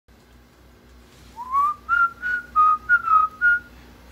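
A short whistled tune: a rising slide followed by about six quick, separate notes, starting after a second of near-quiet.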